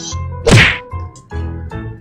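A single loud whack about half a second in, sliding down in pitch as it fades, over background music.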